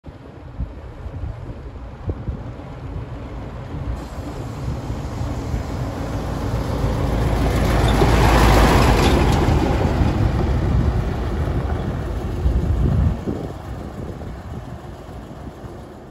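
Dump truck driving past on a dirt road: its engine and tyre rumble builds as it approaches, is loudest about halfway through as it passes close, then fades and drops off sharply a few seconds before the end.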